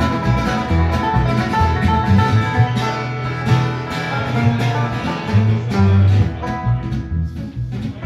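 Live bluegrass/Americana trio playing an instrumental passage: banjo picking and acoustic guitar over a plucked upright double bass, whose low notes are the loudest part.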